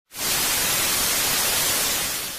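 Television static sound effect: a loud, steady hiss of white noise that cuts in abruptly just after a moment of silence and starts to fade slightly near the end.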